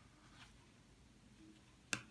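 Near silence: faint room tone, with one short click near the end.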